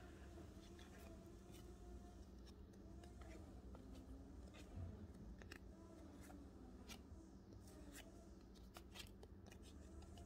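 Near silence, with faint, scattered clicks and rustles of cardboard baseball trading cards being shuffled through by hand.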